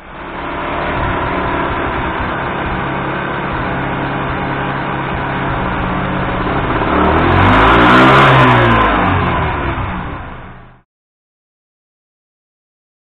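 Motorcycle engine running on a rolling-road dyno, its pitch rising to a peak about eight seconds in and falling back again. The sound cuts off abruptly near the end.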